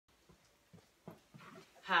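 A dog panting faintly in short, quick breaths, about three a second, before a woman starts speaking near the end.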